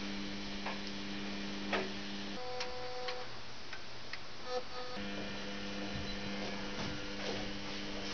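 Samsung front-loading washing machine running: a steady electrical hum cuts out about two and a half seconds in, a higher hum takes over for a couple of seconds, and the lower hum returns at about five seconds, with scattered light clicks throughout.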